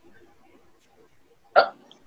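A person says a short, sharp "Oh" about one and a half seconds in, over faint background noise.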